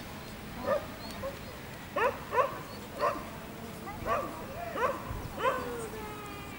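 A small dog yipping: seven or so short, high barks at irregular intervals.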